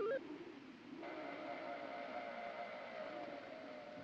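Electronic tones: a fast run of stepping, beeping notes ends just at the start, and about a second in a steady held electronic drone begins.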